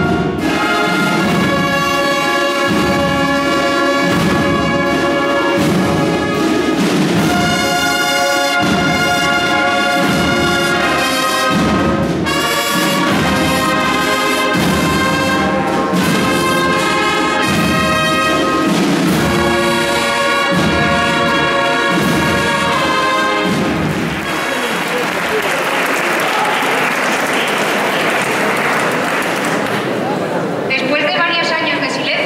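Brass band of trumpets and trombones playing a piece with a steady low beat, which ends about 24 seconds in. Audience applause follows.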